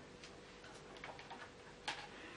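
Faint, scattered clicks of multimeter test probe tips being handled and touched together, with one sharper click near the end: the leads are being shorted to zero the meter on its ohm scale.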